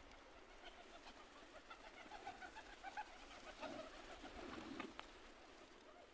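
Faint cooing and soft calls from a flock of feral rock pigeons, many short notes in quick succession through the middle, with a single sharp click near the end.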